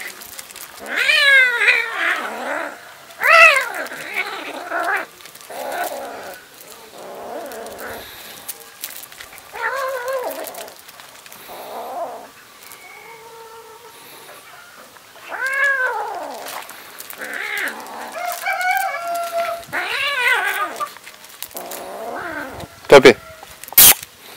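Kitten meowing and yowling over and over while a puppy wrestles with it. The cries come several seconds apart, each rising and falling in pitch. Two sharp, loud clicks near the end.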